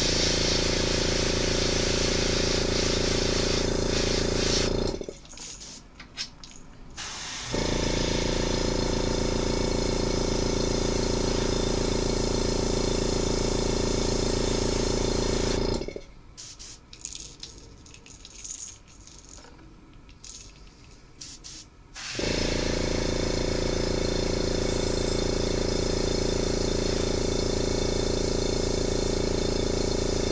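Airbrush spraying paint, driven by a small air compressor: a steady motor hum with a hiss of air. It runs in three stretches of several seconds, cutting off about five seconds in and again about sixteen seconds in, with quieter gaps of light clicks between.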